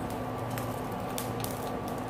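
Steady hum of the stove heating an empty stainless steel pan, with a few light ticks over it.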